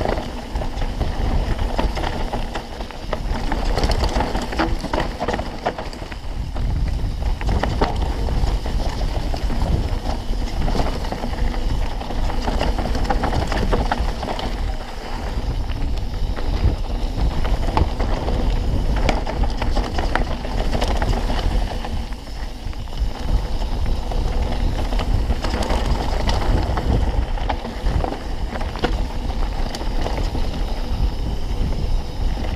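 Full-suspension mountain bike descending fast on a dirt trail: tyres running over dirt and stones, with frequent rattles and knocks from the bike over bumps. Wind buffets the microphone throughout as a steady low rumble.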